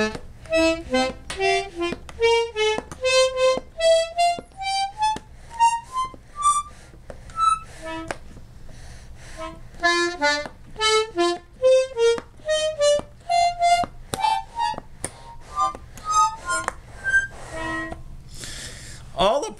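Treble side of a button accordion played one button at a time: short single reedy notes, about two or three a second, climbing up the scale in runs. Some buttons sound thin or barely at all, as many of the reeds, though intact, don't play.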